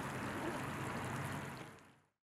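Fountain water splashing and running steadily into its basin, over a low steady hum. It fades out over the last half second.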